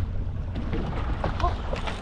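Wind buffeting the microphone over the steady low rumble of a trolling fishing boat under way.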